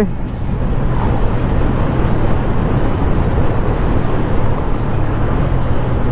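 Riding noise from a Yamaha Sniper 150 motorcycle under way: a steady rush of wind on the microphone over the low, even hum of its single-cylinder engine.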